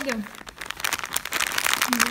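Clear plastic sock packets crinkling as they are handled and shuffled in the hand, a dense run of small crackles.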